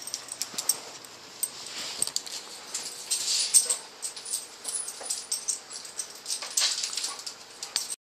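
A dog eating a Beggin' Littles bacon-flavoured treat: irregular wet clicks and smacks of chewing, with a few short hissy bursts.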